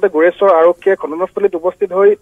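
A person speaking continuously, the voice thin and cut off above the middle range like a telephone line.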